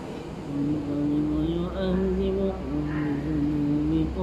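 A man reciting the Quran aloud in a slow, melodic chant, holding long notes that step up and down in pitch with short pauses for breath, over a low steady hum.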